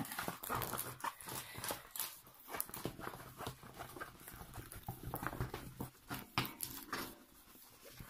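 Irregular rustling and short clicks of a diamond painting canvas being rolled up and handled on a wooden table.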